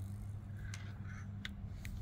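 Faint, light clicks and taps from a Lee hand press as a bullet is set into the sizing die and the press lever is swung open. The clicks come in a few small clusters from about a second in to near the end, over a steady low hum.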